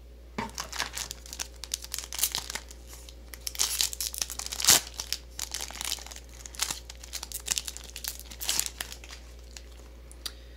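Foil wrapper of a Digimon Card Game booster pack crinkling and tearing as it is opened by hand: a run of irregular crackles, with one louder crack about halfway through.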